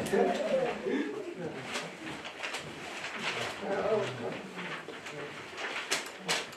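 A man's voice speaking, with short pauses between phrases.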